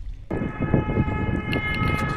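Synthesized intro sting: a sustained chord of several steady tones over a low rumble, starting suddenly a moment in after a brief hush.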